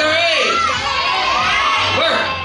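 A crowd of young children shouting out together, many high voices overlapping.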